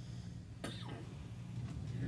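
A single brief cough about two-thirds of a second in, over a low steady hum.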